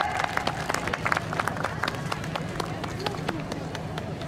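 Audience applause, many hands clapping irregularly, thinning out near the end.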